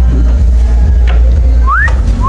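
Heavy low wind rumble on the microphone. Near the end, a person whistles a clear rising note, the first half of a two-note wolf whistle.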